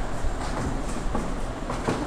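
Steady low background rumble with a few faint clicks or knocks.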